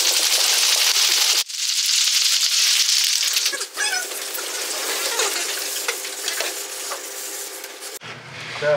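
Audience applauding, with a sudden break about one and a half seconds in; the applause then fades through the second half under faint voices.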